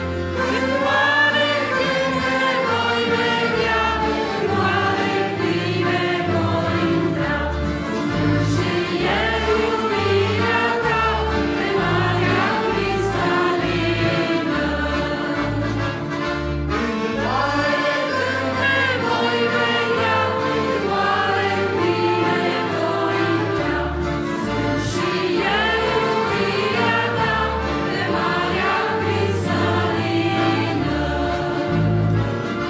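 Live worship hymn: women's voices singing a Romanian song in harmony, accompanied by accordion, keyboard with a pulsing bass line, and saxophones.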